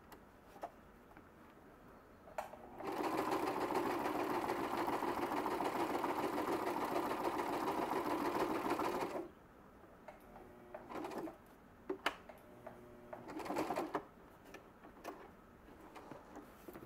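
Electric domestic sewing machine stitching through waxed cotton canvas: one steady run of about six seconds, then two short bursts of a second or less, with a few small clicks between.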